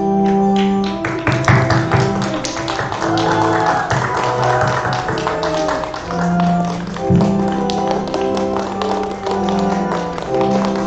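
Organ music in slow, held chords, with guests clapping over it from about a second in until near the end.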